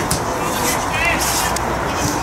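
Football match sound from the touchline: players' brief distant shouts on the pitch over a steady low rumble.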